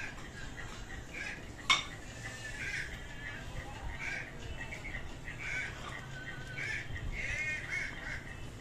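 Birds calling over and over in the background, short harsh calls repeated throughout, with one sharp click a little under two seconds in that is the loudest sound.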